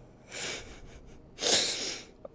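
Two short breathy puffs of air from a person, a soft one about half a second in and a louder, sharper one about a second and a half in.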